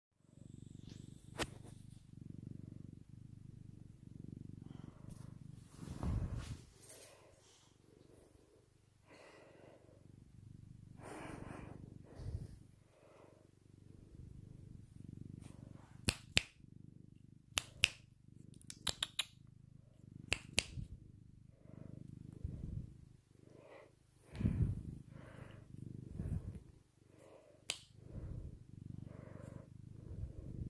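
A seal-point cat purring right against the microphone, a steady low rumble that swells and fades with each breath. A cluster of sharp clicks and rustles from handling falls in the middle.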